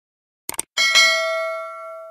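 Subscribe-button sound effect: a quick double mouse click about half a second in, then a single bright bell ding that rings on and slowly fades.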